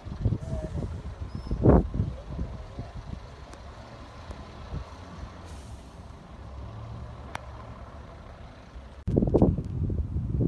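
Low rumble of bus engines running, with a few knocks, the loudest about two seconds in. About nine seconds in the sound jumps suddenly to a louder, closer rumble.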